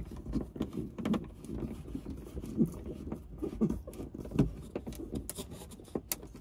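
Hand screwdriver turning screws into the plastic frame of a Dometic Mini Heki roof window, giving a sharp click at the start and then an irregular series of short creaks and scrapes as the screws bite.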